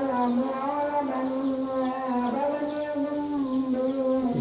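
A voice singing long, held notes, the pitch shifting only slightly about halfway through.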